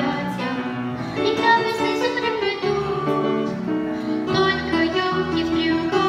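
A girl singing a solo through a microphone over instrumental accompaniment, with long held notes.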